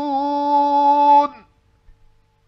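A male Quran reciter's voice holding one long, steady melodic note in tajwid-style recitation. It breaks off about a second and a quarter in, leaving near silence.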